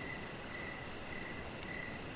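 Faint steady background hiss with a thin, high tone that comes and goes, during a pause in speech.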